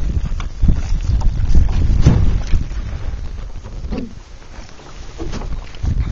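Wind buffeting the microphone: a heavy low rumble that eases off about halfway, with a few faint knocks.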